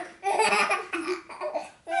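Six-month-old baby laughing in several short bursts.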